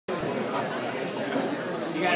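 Crowd chatter: many people talking at once in a room, a steady babble of overlapping voices.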